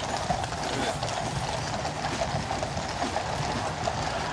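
Hooves of the horses drawing the Gold State Coach clip-clopping on the road, over a steady background din.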